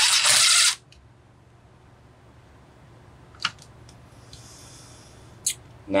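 Cordless drill/driver running a screw into a chainsaw's housing: one loud burst of about a second at the start, then a couple of faint clicks.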